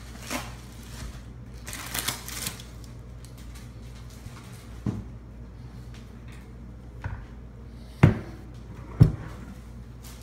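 Plastic bag rustling, then knocks as a heavy statue base is handled and set down on a countertop, the two loudest knocks about a second apart near the end.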